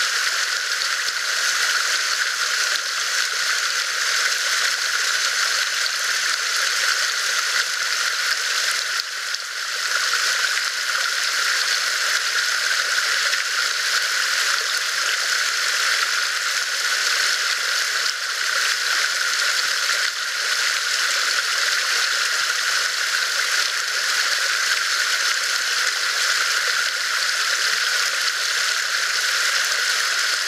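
Water trickling steadily down a rock ledge close by, a constant even splashing with no breaks.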